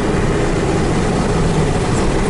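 Steady engine and road noise inside the cabin of a car driving along a road, an even rumble that holds at one level.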